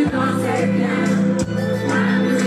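Live pop concert music over a PA: a woman singing into a microphone over a backing track with a steady bass line, joined by many voices singing together.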